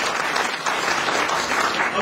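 An audience applauding, many people clapping together at a steady level.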